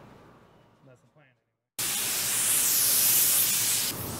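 Compressed air from an air-compressor blow gun hissing loudly and steadily as it blows sawdust out of the nail holes in a plywood wall. The hiss starts abruptly nearly two seconds in, after a moment of near silence.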